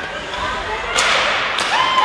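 A single sharp crack from hockey play on the ice about a second in, ringing briefly in the rink, with spectators' raised voices around it.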